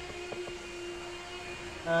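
A steady background hum, with two or three faint clicks about a third of a second in.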